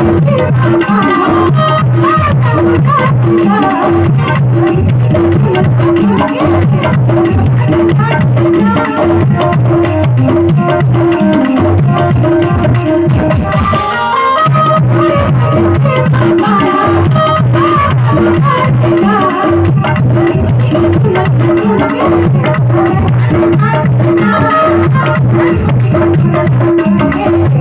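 Live bhajan music from a seated ensemble: a steady, repeating hand-drum rhythm under a wavering melody, with a brief lull about fourteen seconds in.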